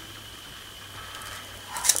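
Quiet room tone with a faint steady hum. Near the end comes a short, soft, hissy rustle, such as paper lifted off a canvas.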